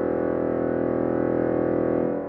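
Pipe organ holding a loud, sustained full chord, with a low pulsing beat underneath; the chord is released right at the end and begins to die away in the church's reverberation.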